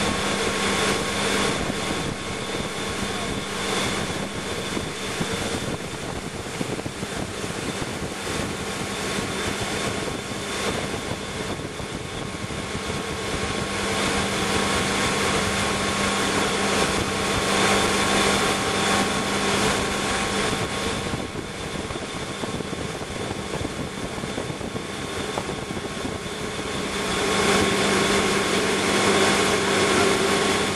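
Tow boat's inboard engine running steadily at skiing speed, heard from the stern with the rush of the wake and wind noise over it. It grows louder near the end.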